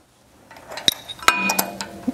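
Steel flat washer clinking against the pivot pin and cast arm housing as it is slid over the end of the pin: a few sharp metallic clinks with brief ringing, in the second half.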